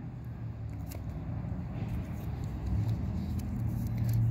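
A motor vehicle's engine rumbling low and steady, slowly getting louder.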